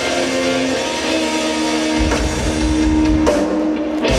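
Live rock band playing: electric guitar, bass guitar and drum kit, with held guitar notes over the drums.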